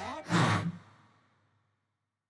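A short breathy sigh in a cartoon voice, about half a second long, just after the music cuts off.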